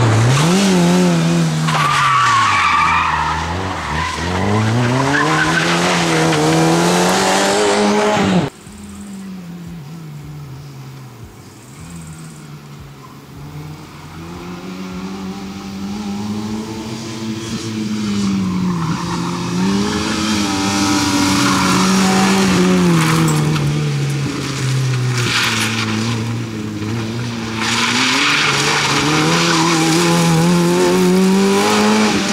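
Fiat Cinquecento rally car driven hard round a tight tarmac course: the engine revs up and down again and again through gear changes and braking, with tyres squealing. About eight seconds in the sound drops suddenly and the car is faint, then it grows loud again as it comes back near.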